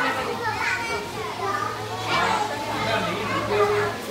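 Children's voices: excited chatter and calls from several kids, over a steady low hum.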